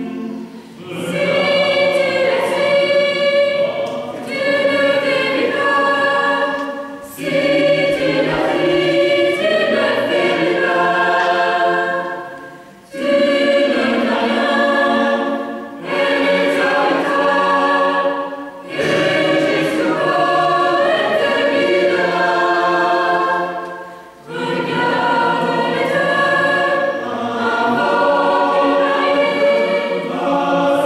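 Mixed choir of young women and men singing a slow piece in several-part harmony, in phrases of a few seconds each with brief breaks between them.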